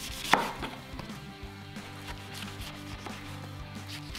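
Chef's knife slicing a cabbage half into thin shreds on a wooden cutting board: a run of irregular knife strikes through the leaves into the board, the loudest about a third of a second in.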